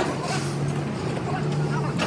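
A steady motor hum that breaks off and comes back a few times, with scattered clinks and background voices.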